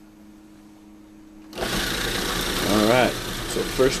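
Food processor switched on about a second and a half in, its motor and blade running steadily as they grind peanuts into peanut butter.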